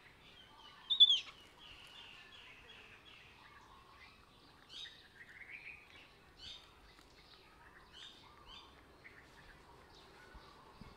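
High-pitched chirping animal calls: one loud gliding chirp about a second in, followed by a string of softer chirps and scattered short calls over the rest of the time.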